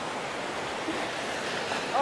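Shallow surf washing in over a sandy beach: a steady rush of small breaking waves swirling around the legs of someone wading.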